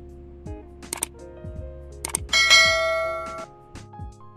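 Background music under a subscribe-button animation's sound effects: a few sharp clicks, then a bright bell ding a little over two seconds in that rings for about a second.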